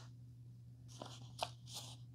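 Faint rustling of a paper instruction sheet being handled, with a couple of small clicks about a second in, over a steady low hum.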